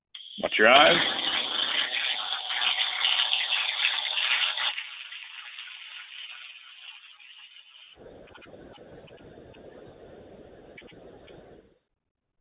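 Pulsed MIG welding arc from a cobot torch on stainless steel, a loud, dense crackling buzz that starts abruptly. After about five seconds it drops to a softer hiss, and a faint noise trails off shortly before the end. The sound is thin and cut off at the top, as through a web-conference audio feed.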